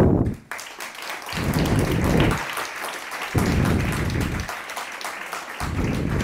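Audience applauding at the end of a talk, a steady patter of many hands clapping, with three dull low rumbles underneath.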